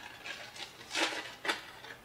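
Snack packaging being opened by hand: short crinkling rustles of wrapper, the loudest about a second in, followed by a sharp crackle.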